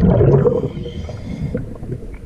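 Underwater rumble and gurgle of a scuba diver's exhaled bubbles, loud at first and fading after about half a second into a quieter wash with faint clicks.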